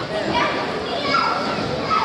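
Chatter of children's and adults' voices in a large sports hall, with a higher child's voice about a second in.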